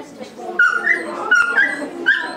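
Dog whimpering with short high yips, a pair of them about half a second in and again near the end, over background chatter.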